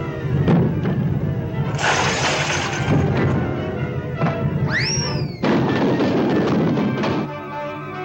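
Animated-cartoon orchestral score with sound effects laid over it. There is a noisy burst about two seconds in, a rising-then-falling whistle-like glide about five seconds in, and another noisy stretch after it.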